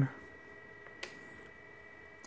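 A single sharp click of a desk phone's keypad button being pressed about a second in, over a quiet room with a faint steady high-pitched tone.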